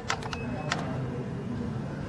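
A quick run of about five sharp clicks in the first second, over a low, steady background murmur.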